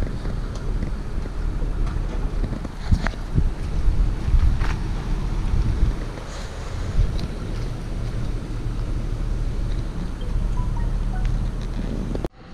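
Wind rumbling on the microphone, with background music underneath.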